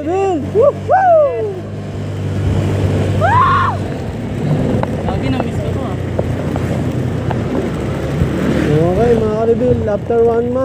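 Honda Click 125 scooter's single-cylinder engine running while riding, with road and wind noise; its steady low hum sinks under the noise about four seconds in. A voice sings in long, gliding phrases at the start, near the middle and again near the end.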